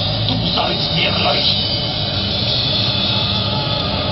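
A live band plays a steady, droning instrumental backing: a sustained low bass drone under a hazy, noisy wash of sound, with no clear beat.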